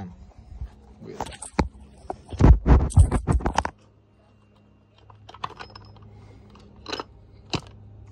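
Clicks and knocks from handling, with a burst of rattling thumps about two to three and a half seconds in. After a short drop-out come a few sharp metal clicks as the KX85's aluminium crankcase halves are worked apart.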